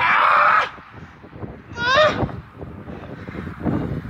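A person's loud yell at the start, then a short, high, rising whoop about two seconds in.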